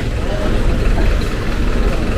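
A truck engine idling, a steady low rumble.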